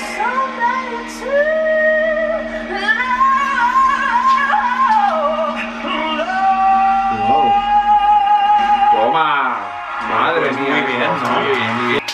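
A male singer performing live with backing music: sung phrases with vibrato build to a long high note held for about three seconds, which breaks off about nine seconds in, followed by voices.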